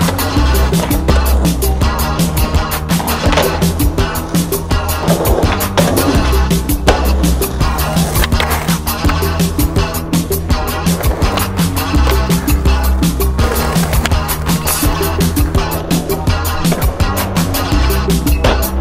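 Hip-hop backing track with a steady beat and bass line, without vocals, mixed with skateboard sounds: urethane wheels rolling on pavement and the board clacking on tricks.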